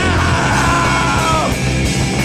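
Rock band playing loud and live, the male singer yelling one long held note into the microphone that slides down in pitch and breaks off about a second and a half in, over the full band.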